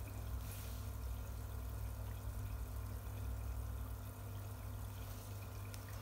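Water trickling and dripping steadily into a fish pond from its filter, over a steady low hum.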